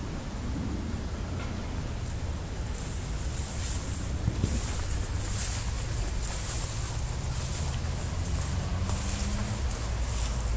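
Outdoor background: a steady low rumble, with a high hiss that swells and fades in patches from about three seconds in.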